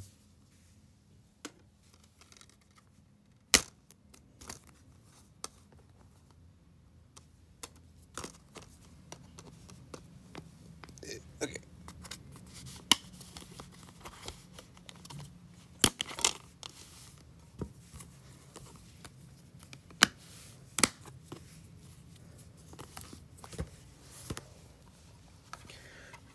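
Handling of a plastic DVD case and disc: scattered clicks and knocks as the case is opened and the disc is taken off its centre hub, with faint rustling between them.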